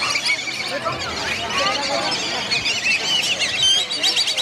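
Dense chorus of many birds calling at once: a constant mass of high, quick chirps and squeals with a few lower calls mixed in.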